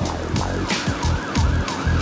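A siren in fast yelp mode, its pitch sweeping up and down about three times a second, fainter than the steady drum beat under it.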